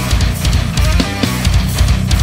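Loud modern thrash metal played by a full band: distorted electric guitars and bass over a drum kit with fast, driving kick drums, with no vocals.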